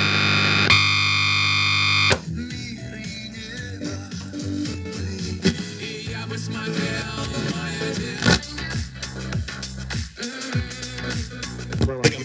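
Panasonic RX-CT890 boombox radio on the shortwave band. A loud steady hiss of static cuts off abruptly about two seconds in. Then, as the tuning knob is turned, faint music comes and goes through crackling interference, with brief sweeping whistles as the dial passes stations.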